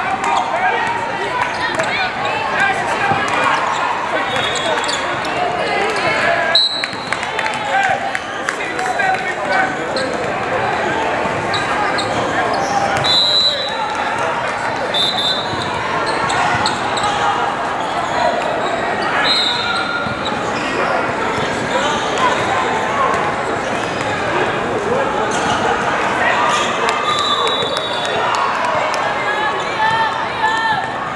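Basketball being dribbled on a hardwood court in a large, echoing hall, with sneakers squeaking several times and a steady babble of players' and spectators' voices.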